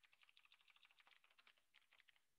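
Faint, fast typing on a computer keyboard: a quick, continuous run of key clicks.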